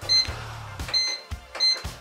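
Cuisinart bread machine's control panel beeping three times as its buttons are pressed to set the baking program: short, high electronic beeps, the first right away, the next about a second in and the last shortly after.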